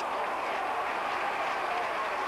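Football stadium crowd noise: a steady wash of many voices with no single shout or cheer standing out.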